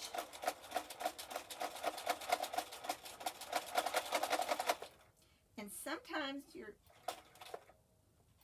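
Electric domestic sewing machine stitching through layered cotton fabric in a fast, even run of needle strokes, stopping about five seconds in.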